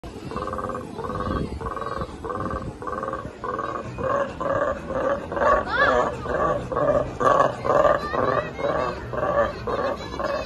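Black-and-white colobus monkeys giving their rhythmic roaring call, a steady train of pulses about twice a second that grows louder after about four seconds.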